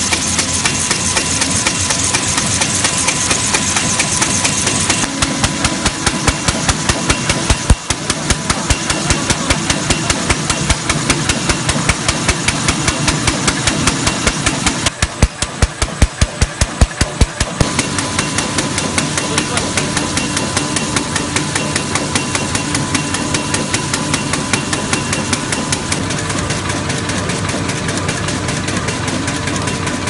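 V-bottom paper bag making machine running: a steady mechanical drone with a faint steady whine and a fast, even clacking of its mechanism, about three knocks a second. The knocking is heaviest through the middle stretch.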